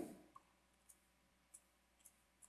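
Two faint clicks of a computer mouse, about a second apart, over near silence.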